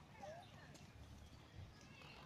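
Quiet: a pony's hooves walking on a packed dirt path, with faint distant voices.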